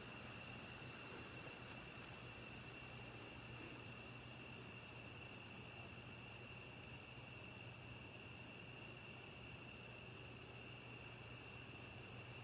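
Faint, steady chorus of night insects, a continuous high-pitched trill that never breaks, over a low hum.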